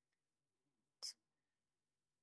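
Near silence, broken about a second in by one short whispered hiss, a breathy sibilant sound from the crocheter quietly counting stitches.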